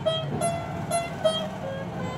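A veena played by hand: single plucked notes, about two or three a second, some sliding in pitch between frets.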